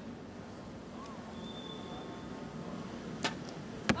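A compound bow shot: a sharp crack as the arrow is released about three seconds in. A louder crack follows about two-thirds of a second later as the arrow strikes the target.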